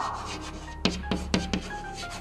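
Chalk writing on a blackboard: faint scratching strokes, with a few sharp taps of the chalk about a second in as the letters are formed.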